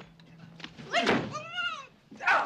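A woman's high-pitched scream about a second in, rising and falling once, right on top of a sharp thump from the struggle.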